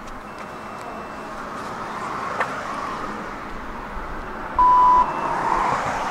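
OV-chipkaart card reader giving a single short beep about four and a half seconds in, over road traffic noise that swells as a vehicle passes; a sharp click sounds a little before the middle.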